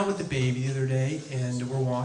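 A man's voice through a stage microphone, drawn out in long level-pitched notes like chanting rather than ordinary talk. There are two held stretches with a short break about halfway through.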